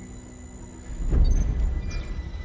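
Film soundtrack: steady electronic tones under the score, then a deep low rumble swells in about a second in and is the loudest sound.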